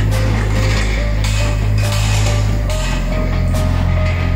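Background music: deep held bass notes that shift a little under three seconds in, a sustained higher note stepping up in pitch, and occasional short percussive hits.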